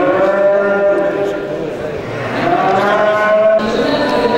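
Limousin cattle mooing: two long moos, the second cut off suddenly about three and a half seconds in.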